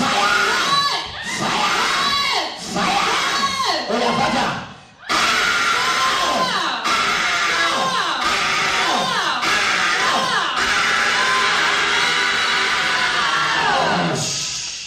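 A woman screaming and crying out over and over, each cry rising and falling in pitch. The cries break off briefly about five seconds in, then carry on.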